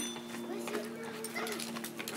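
Faint, indistinct children's voices over a steady low hum.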